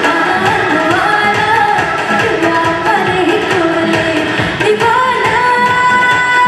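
A woman singing a melody into a microphone over instrumental backing with a steady beat. About five seconds in she settles into one long held note.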